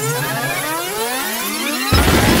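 Electronic synthesizer music: many overlapping rising pitch sweeps, like siren glides, repeat every few tenths of a second over a steady low drone. A loud low rushing sound comes in right at the end.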